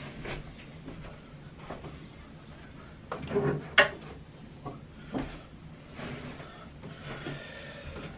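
Faint knocks, clicks and shuffling of gear being handled as an electric guitar is fetched from behind a stack of amps, with the sharpest click about four seconds in.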